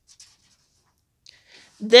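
Paper page of a picture book being turned by hand: faint, brief rustles near the start, then a woman's speech begins near the end.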